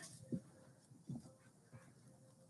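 Very quiet room tone with a few faint short sounds, about a third of a second in, about a second in and near the end.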